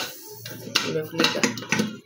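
Several sharp plastic clicks and knocks from a clear plastic food chopper bowl and its blade insert being handled, with a woman's unclear speech.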